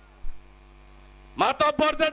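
Steady electrical mains hum, a stack of low steady tones, heard in a pause in a man's speech at a microphone. There is a brief sound about a quarter second in, and the man's voice resumes about one and a half seconds in.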